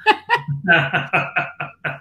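Laughter: a run of short, quick laughs.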